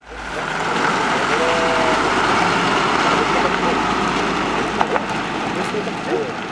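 Rear-loading garbage compactor truck's engine running steadily with outdoor noise. It fades in during the first second, with faint, indistinct voices.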